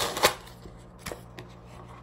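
Paper and cardboard packaging being handled: two sharp rustles at the very start, then a few faint taps and clicks.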